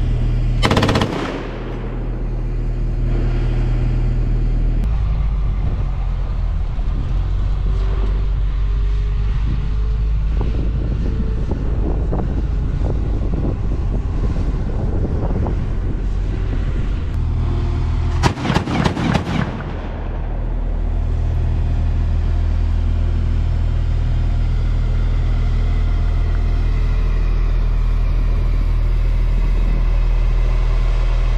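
Diesel engine of a Stryker-based Sgt Stout air defense vehicle running steadily. One loud sharp blast comes about a second in, and a short rapid burst of gunfire comes past the middle.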